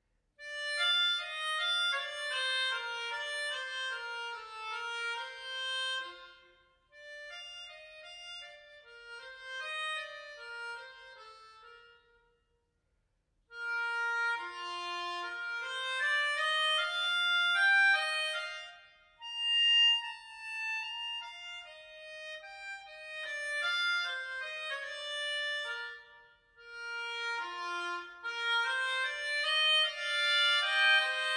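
Hohner Fire melodica playing a single-line improvised melody in phrases, with short pauses between them and a full stop of about a second near the middle.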